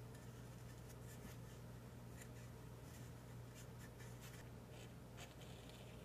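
Near silence with a steady low hum. Faint rustles and scrapes come from a sheet of fabric being handled on a cutting mat, more of them in the second half.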